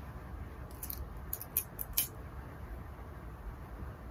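A handful of small, sharp clicks from pins and a plastic pincushion being handled while fabric is pinned, bunched in the first half, the loudest about two seconds in, over a low steady room hum.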